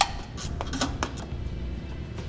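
Irregular sharp metallic clicks and clinks of a 13 mm wrench working the bolts that hold a truck's exhaust heat shield to the frame rail. The sharpest click comes right at the start, over a faint steady low hum.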